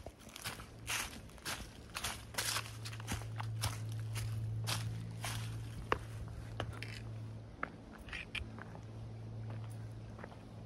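A hiker's footsteps on dry leaf litter along a forest trail, about two steps a second. A faint steady low hum runs underneath.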